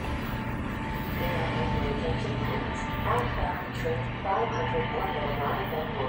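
Station loudspeaker announcement in a recorded voice, echoing along the platform, over the steady low rumble of a departing Metra diesel commuter train.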